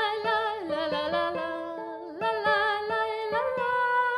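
A woman humming a wordless melody with vibrato, accompanied by fingerpicked nylon-string classical guitar; she holds a long, steady note near the end.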